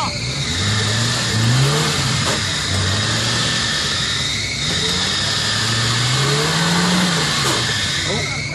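Suzuki SJ-series 4x4's engine revving up and down several times as it drives through deep mud and water, the longest and highest rev near the end.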